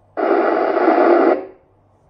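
Yaesu FT-991A transceiver's speaker giving a burst of radio static, a little over a second long, that cuts off suddenly right after the test transmission is unkeyed. The 70 cm repeater is answering only noisily: the test signal from a rubber duck antenna is not quite making it.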